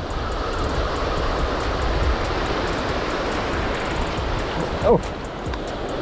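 Steady rush of surf breaking and washing up a sandy beach, with a short exclamation near the end.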